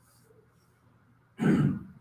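A person clears their throat once, a short rough burst about one and a half seconds in, after a near-silent pause.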